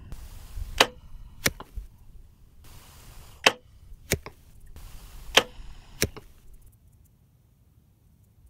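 Three shots from a compound bow fitted with a basic shock-absorber stabilizer. Each shot is heard as a pair of sharp cracks about two-thirds of a second apart: the bow's release, then the arrow striking the foam target at 50 yards.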